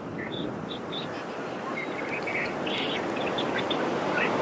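Steady wash of surf and wind, slowly growing louder, with many short, high bird chirps scattered through it.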